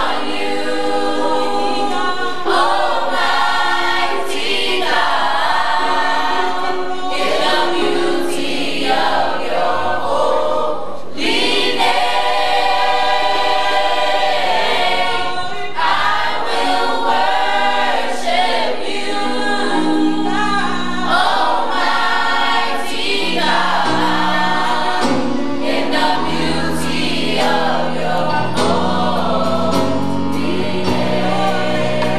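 Youth gospel choir singing in harmony, in phrases of long held notes.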